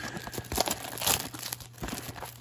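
Foil wrapper of an Upper Deck Artifacts hockey card pack crinkling in the hands, in a run of short irregular rustles as it is handled for opening.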